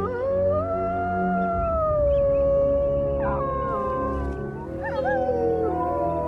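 Grey wolf howling: one long howl that rises, holds for about four seconds and slides down, then further overlapping howls rise and fall near the end.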